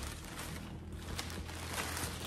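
Cloth rustling and crinkling as a large stamped cross-stitch fabric blanket is handled and unfolded, in uneven swells. A low steady hum runs underneath.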